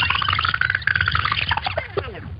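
Rewind-style transition sound effect: a fast train of clicks under a pulsed tone that rises in pitch and then falls, with sweeping glides around it, fading near the end.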